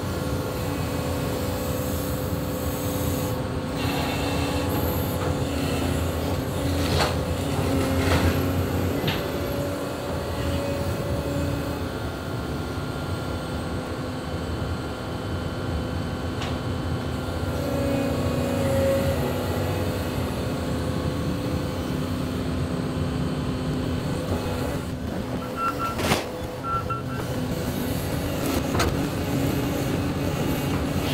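Volvo tracked excavator running, its diesel engine and hydraulics humming steadily and swelling a couple of times as the arm works. A few sharp knocks come as it handles the demolition debris, the loudest near the end.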